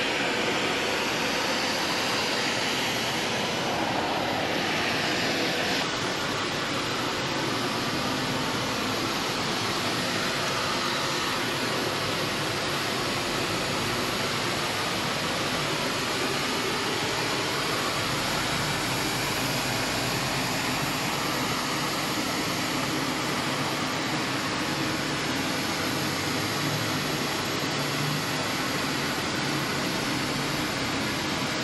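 Jet aircraft engines running: a steady, even rushing noise with no breaks.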